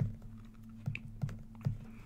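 Stylus tapping on a tablet or pen-display surface as short lone-pair dashes are drawn, with several light, separate clicks. A steady low electrical hum runs underneath.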